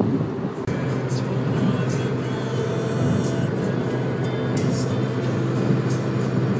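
Music playing on a car stereo over the steady road noise of the moving car, heard inside the cabin.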